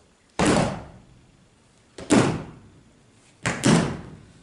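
Three loud, sudden thuds in a reverberant hall: one just after the start, one about two seconds in, and a quick double near the end, each ringing out briefly.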